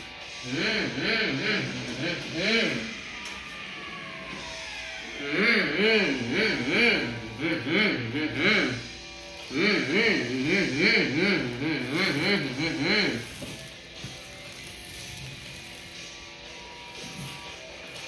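A boy humming and vocalising in short rising-and-falling swoops, in three stretches, then a quieter spell with a brief laugh near the end.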